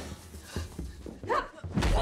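Fight-scene thuds of blows and a body hitting the floor, the loudest a heavy low thud near the end, with a woman's short pained cry about a second and a half in.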